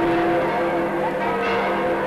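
Church bells ringing, several at once, their steady tones overlapping.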